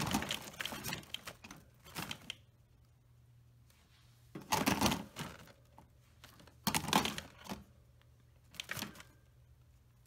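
A pet rabbit moving about in its wire cage among lettuce leaves: five irregular bursts of rattling and rustling with short quiet gaps between them.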